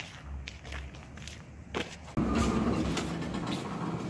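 Footsteps walking up to a supermarket entrance, then, about halfway through, a sudden rise to the store's steady indoor background hum as the doorway is passed.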